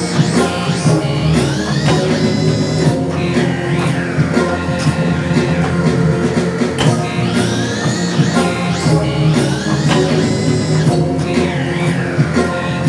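Electronic synthesizer music played through studio monitor speakers: a steady, dense bass under gritty, rock-like lead sounds, with sweeping glides that rise and fall in pitch every few seconds.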